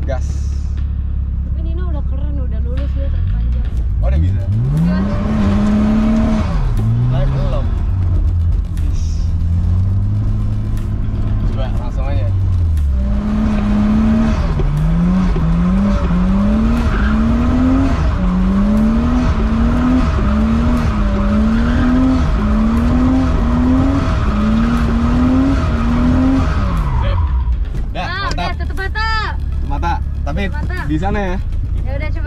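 Nissan Cefiro drift car spinning donuts: the engine revs hard, climbing and dropping about once a second, with tyres squealing.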